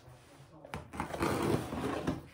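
Scissors slitting the packing tape on a cardboard parcel: a rough, grainy scraping that starts about two-thirds of a second in and keeps going.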